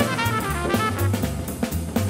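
Hard-bop jazz recording with the drum kit in front, snare and cymbal strokes over a bass line, while the horns drop back for a moment.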